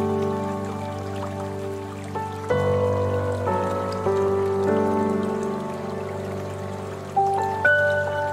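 Slow, soft instrumental relaxation music: sustained chords whose notes are struck and then fade, changing every second or two. Underneath is a faint patter of falling water from a fountain.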